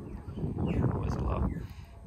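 A quiet, indistinct voice murmuring over a low, steady background rumble.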